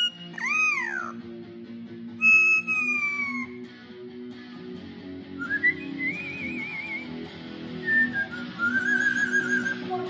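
Amazon parrot whistling long notes that rise and fall, then a warbling note and a quick wavering trill near the end, along to an electric guitar playing chords.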